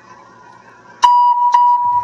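Electronic tone of a legislative chamber's voting system, sounding as the roll call vote is opened. It starts with a click about a second in and holds as a loud, steady single-pitched beep, with another click half a second later.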